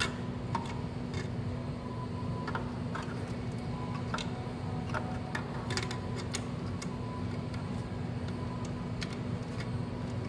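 Scattered light clicks and taps as the kiosk's green test-cable connector is handled and pushed back into its opening, over a steady low electrical hum.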